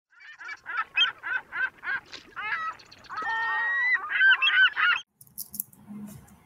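A run of loud honking calls, about three a second, with a longer held call in the middle, stopping about five seconds in.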